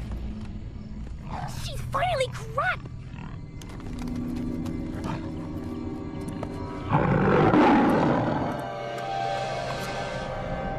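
A cartoon bear roar sound effect: one loud rough roar about seven seconds in, over a dramatic music score. Short cries rising and falling in pitch come near two seconds in.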